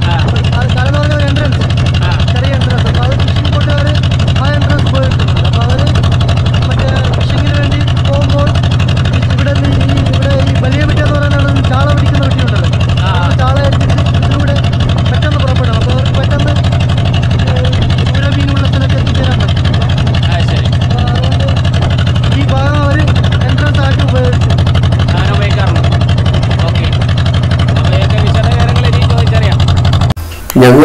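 A motorboat's engine running steadily at constant speed, with people's voices talking over it.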